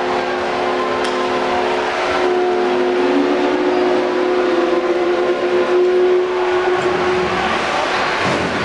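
Ice arena goal horn sounding one long steady chord of several tones over crowd cheering after a goal, the horn cutting off shortly before the end.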